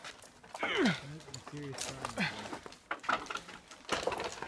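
People's voices making wordless calls and sounds, one dropping sharply in pitch about a second in and another a little after two seconds.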